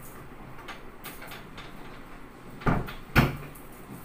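A wardrobe door being handled and shut: a few faint clicks, then two sharp knocks about half a second apart, the second the louder.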